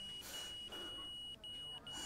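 Hospital heart monitor sounding a steady high-pitched flatline tone, broken by a few brief gaps: the signal that the patient's heart has stopped.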